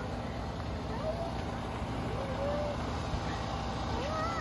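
Steady low engine hum, with faint distant voices.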